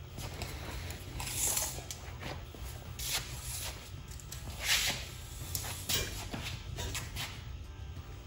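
Scattered footsteps, rustles and sharp clicks of a person handling a steel tape measure, pulling it out across a car's rear axle, over a steady low hum.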